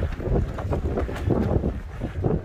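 Gusty wind rumbling heavily across the microphone and buffeting the fabric walls of a steel-frame carport tent in a storm.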